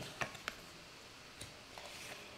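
Quiet room tone with a few faint, short clicks, two close together near the start and a weaker one later.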